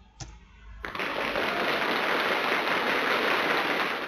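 A single click, then a pre-recorded slide-transition sound effect: about three seconds of dense, steady hiss of rapid patter that starts and stops abruptly.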